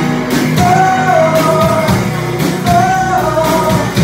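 Live band playing amplified music, a singer holding two long sung phrases over drums and bass.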